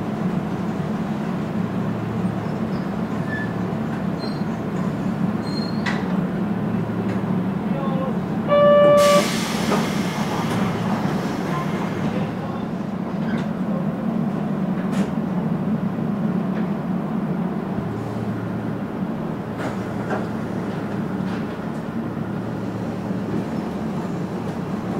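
Kobe Electric Railway 1100 series train standing at a platform, its equipment giving a steady low hum. About nine seconds in, a loud, short horn-like tone sounds for under a second, followed by a hiss of air that fades over a few seconds.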